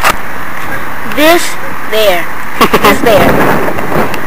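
Short voice sounds from a person right at the microphone over a steady hiss, with a few sharp knocks about a second before the end, followed by a brief burst of noise.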